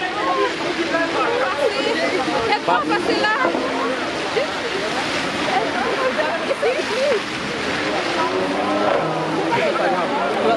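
Several people talking and laughing at once outdoors, their voices overlapping, over a steady background rush of street noise.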